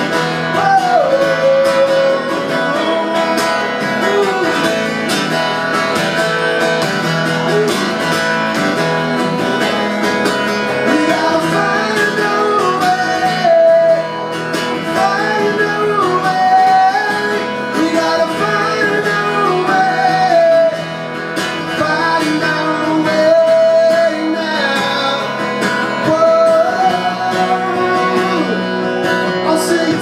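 Live song: a man singing with his own strummed acoustic guitar.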